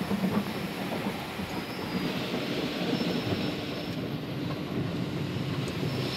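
Vintage Hanna tunnel car wash machinery, water spray and brushes working over the car, heard from inside the cabin: a steady rumbling wash with hiss. A faint steady hum joins it about two seconds in.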